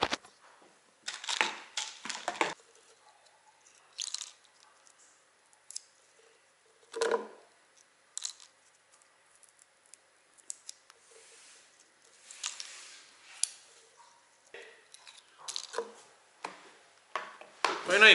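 Scattered quiet handling noises of plastic supplement tubs and a plastic shaker bottle while a pre-workout drink is being mixed: short clicks, rustles and scrapes with gaps between them, and one louder sound about seven seconds in.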